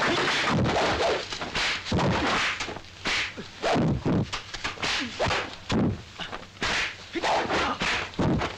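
Kung fu film fight sound effects: a rapid string of swishes from a swung staff and fists, each cut off by a sharp whack as a blow lands, about a dozen in quick succession with a brief lull near the end.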